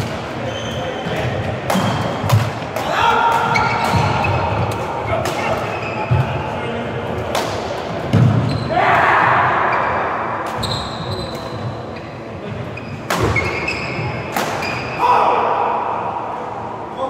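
Badminton doubles rally: a string of sharp racket strikes on the shuttlecock and players' footfalls on the court, mixed with short squeaks and voices calling out.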